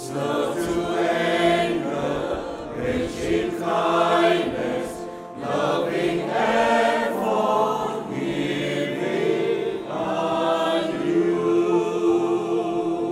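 Church choir singing a hymn together in long held phrases, with a short break about five seconds in.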